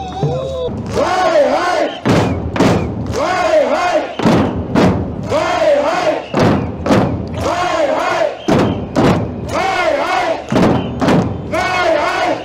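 A crowd shouting the same short chant over and over, about once a second, in time with loud beats on hand-held frame drums and snare drums. The rhythm starts about a second in.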